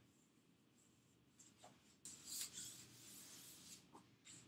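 Faint rubbing swish of a fondant roller rolling out fondant on the countertop, lasting about two seconds in the second half, after a soft knock.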